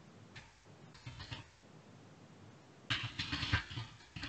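Computer keyboard keystrokes in short bursts of rapid clicks, the longest and loudest burst about three seconds in.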